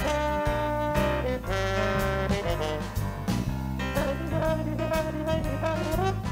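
Live jazz band playing an up-tempo swing tune. Saxophone and trombone hold long notes over piano, bass and drums.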